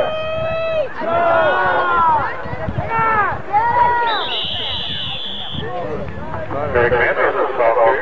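Spectators shouting and talking close by, then about four seconds in a referee's whistle blows one steady blast of about a second and a half to end the play. The crowd chatter picks up again after it.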